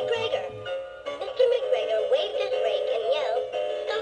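Music played by a battery-operated animated Peter Rabbit soft toy, a melodic tune with quick-changing notes, between passages of its story narration.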